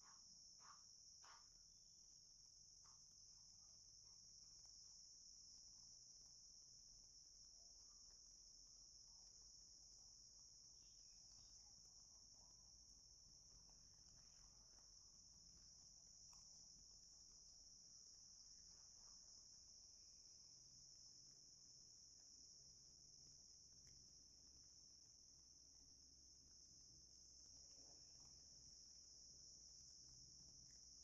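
Near silence: room tone with a faint, steady high-pitched whine and a few faint ticks.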